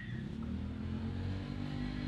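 A steady low mechanical hum, like a motor or engine running.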